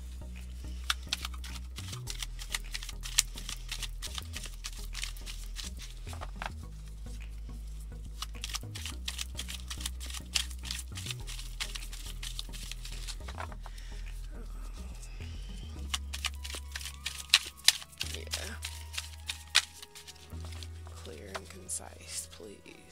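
A deck of tarot cards being shuffled by hand: runs of quick card clicks and flicks, with the loudest snaps near the end. Background music with low bass notes plays underneath.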